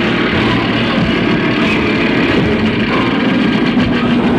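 Live experimental band playing a loud, steady droning wall of electric guitar and electronic noise, with held low tones and no clear beat.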